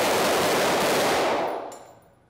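Rapid gunfire from several pistols and rifles, so dense the shots run together into one continuous noise, fading away in the last half-second.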